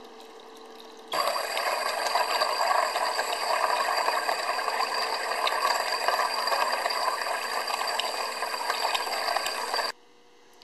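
Joemars TR100 EDM tap burner arcing under water as its electrode burns a hole down the centre of a broken 1/4-20 tap: a steady crackling sizzle with thin high tones over it, mixed with the flushing water. It starts suddenly about a second in and cuts off just before the end.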